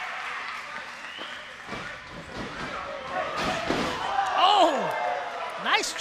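Several heavy thuds of wrestlers' bodies hitting the ring and floor, between about two and four seconds in, with crowd members shouting. The loudest shouts come near the end.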